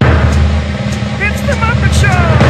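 A loud, steady low rumble that cuts in suddenly, with a voice making short sliding sounds over it in the second half.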